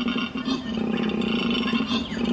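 Koala bellowing: one long, steady call with a fast rasping pulse, played as a recording over a hall's loudspeakers.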